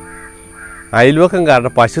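A man speaking close to the microphone, starting about a second in. Before that there is a quieter steady sound of several held tones.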